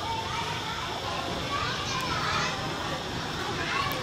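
Children's voices and people talking at a busy children's ride, over a steady background hubbub.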